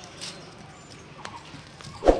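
Faint, scattered light taps on concrete from a small child walking barefoot while carrying a stick.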